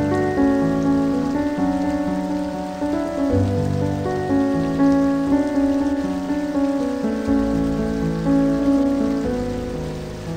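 Slow background music with long held notes and chords changing every second or so, over the steady rush of river water cascading over rock ledges.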